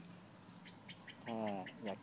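Faint bird chirping: a quick series of short, high chirps, about six or seven a second.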